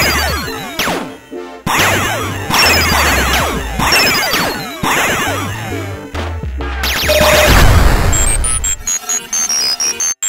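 Electronic soundtrack with a pulsing low beat, layered with a dense stream of retro arcade laser-zap effects that fall in pitch. About seven and a half seconds in comes a loud low rumble, followed by a run of short stepped electronic bleeps.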